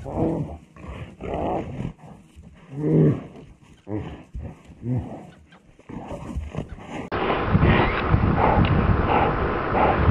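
Brown bears fighting, growling and roaring in separate calls about a second apart. About seven seconds in the sound cuts to a louder, steady rushing background.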